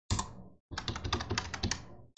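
Computer keyboard typing as a password is entered and then entered again: a quick run of keystrokes, a short break, then a longer run.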